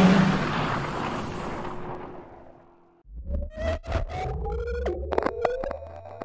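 Outro sound effects: a noisy whoosh that fades out over about three seconds, then an electronic logo sting with sharp clicks and a slowly rising tone over a low hum.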